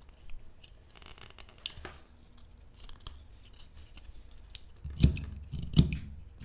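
Wood carving knife slicing into a block of ficus wood: a run of small, irregular cutting crackles and scrapes as the blade shaves the fibres, with two louder thumps near the end.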